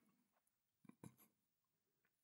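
Near silence, with a few faint soft mouth clicks from a man eating with his hands about a second in.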